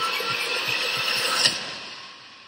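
Movie-trailer sound design: a dense swelling hiss over a quick low pulse, ending in a sharp hit about one and a half seconds in, then fading away as the title card comes up.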